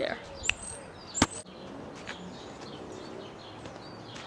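Two sharp clicks in the first second and a half, the second louder, then a faint steady outdoor background with small birds chirping.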